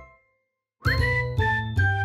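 Bright, chiming outro music over a steady low beat. It cuts out just after the start, then comes back about a second in with a quick upward swoop and a run of chime notes stepping downward.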